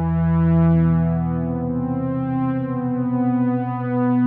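Synthesizer drone of steady held notes. About a second and a half in, a new note enters above the low ones, and the low tones pulse briefly.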